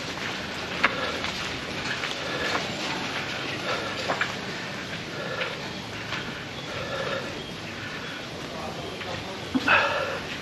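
Motor scooter running at low speed along a wet dirt lane, a steady hum and rumble of engine and tyres, with short repeated calls in the background and a louder knock near the end.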